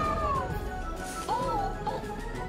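Two short, cute, meow-like electronic calls from a Loona robot pet, the first falling in pitch and the second rising and falling, over background music.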